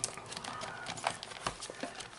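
Light rustling and a scatter of small taps and clicks from a plastic card-binder pocket page being handled and moved over a desk.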